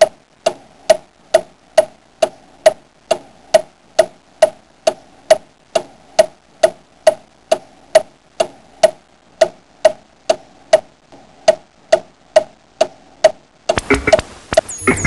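Steady ticking, a little over two even ticks a second, each a short pitched tock with a faint high click.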